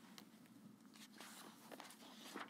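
Near silence: quiet room tone with a few faint soft clicks and rustles of a sheet of paper being handled.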